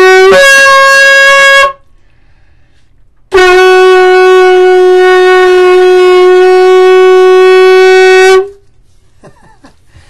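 A long curved shofar blown in two blasts. The first steps up in pitch just after the start and stops before two seconds. After a short pause comes one long steady blast of about five seconds, ending near eight and a half seconds.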